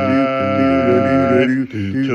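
Several overdubbed tracks of one man's voice, sung a cappella, hold a steady chord with a lower voice part moving beneath it. The chord breaks off about one and a half seconds in as the next sung notes begin.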